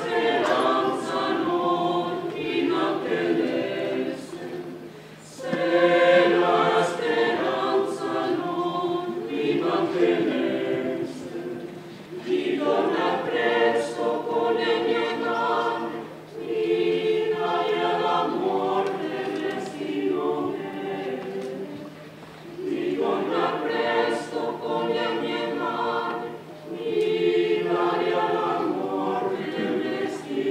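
Mixed choir of men's and women's voices singing under a conductor, in phrases broken by short pauses every few seconds.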